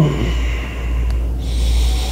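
A man's short laughing grunt, then heavy breathing out, with a hissier breath in the second half, as he reacts to a chiropractic adjustment.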